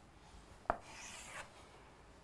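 Chalk on a blackboard: a sharp tap as the chalk meets the board about two-thirds of a second in, then a dry scrape lasting about two-thirds of a second as a long line is drawn.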